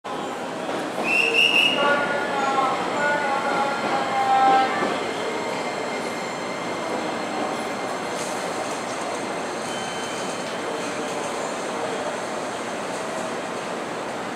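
JR Kyushu 787-series electric train pulling slowly out of a station, with a run of short pitched tones and voices over the first few seconds, then steady running noise from the train.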